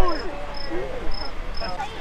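An insect chirping: short, high, steady chirps repeating about twice a second, with distant voices calling across the field, loudest right at the start.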